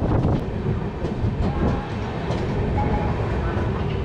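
Passenger train running on the rails, heard from an open coach doorway as it rolls into a station: a steady rumble with rail clatter, and faint thin squealing tones coming in from about halfway through.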